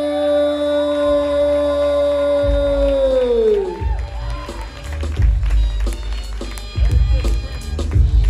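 Walk-on music over a sound system: a long held note slides down in pitch a few seconds in and gives way to a heavy bass beat with sharp drum hits.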